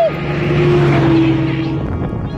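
A motor vehicle passing by on the road: a steady engine drone with tyre and road noise that swells to a peak about a second in and then fades a little.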